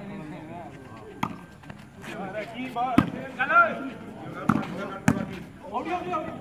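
Men's voices shouting and talking across the court, broken by four sharp slaps of a volleyball being struck by hand.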